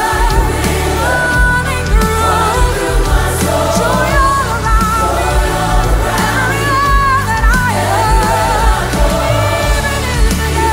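Live gospel worship song: a lead singer and a group of backing vocalists singing 'I've got Jesus, so I've got joy… joy all around me everywhere I go' over a full band with a steady bass beat.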